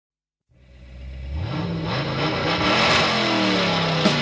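Car engine revving and accelerating, fading in from silence about half a second in, its pitch rising and then falling back: the recorded engine effect that opens the song soundtrack.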